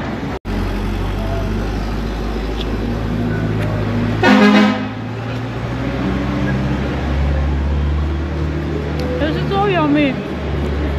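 A car horn honks once, briefly, about halfway through, the loudest sound here, over a steady low rumble of street traffic.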